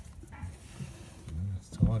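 A man's voice over quiet workshop noise: a short hum about a second and a half in, then a spoken word near the end.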